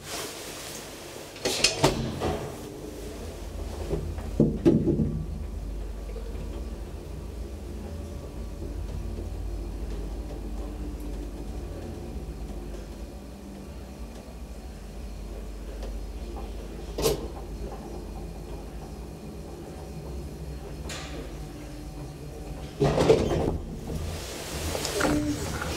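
Old Graham Brothers traction elevator car on a ride: a few clunks as it sets off, then a steady low rumble while it travels, broken by a sharp click about two-thirds of the way through, and a louder cluster of clunks near the end as it comes to a stop.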